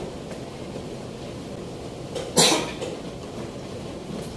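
A person coughing once, sharply, a little over halfway through, over the steady murmur of a room.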